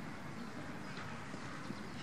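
Steady, rumbling noise of wind on the microphone across an open playing field, with a few faint scattered knocks.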